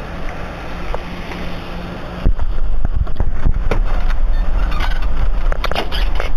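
Wind and outdoor hiss on a body-worn camera's microphone. About two seconds in, loud rubbing, scraping and knocking begins as something is pressed against the camera and covers its lens, and it runs on in a dense jumble of knocks.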